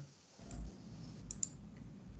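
Faint computer mouse clicks, a few in quick succession about a second and a half in, over quiet room tone.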